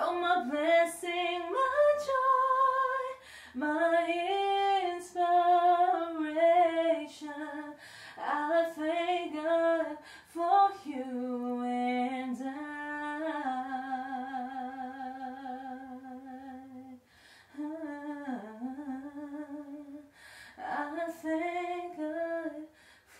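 A woman singing a solo vocal take into a studio microphone, heard without any accompaniment. Her phrases carry quick melodic runs, with a long held note in vibrato a little past the middle and a falling run near the end.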